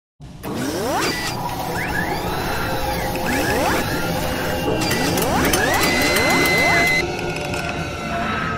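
Mechanical sound effects for an animated intro: a run of clicks and clanks with repeated rising whines over a low rumble. A high tone is held for about a second near the end, then the sound drops back.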